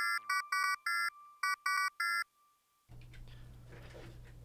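The end of an electronic song: a quick run of short, staccato synthesizer beeps that sound like fax-machine tones, stopping abruptly about two seconds in. After a brief silence a low steady hum comes up.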